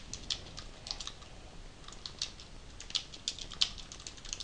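Typing on a computer keyboard: a quick, irregular run of keystrokes entering a short line of text.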